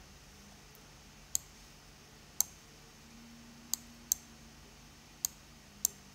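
Computer mouse clicking: about six short, sharp clicks at irregular intervals over low room tone.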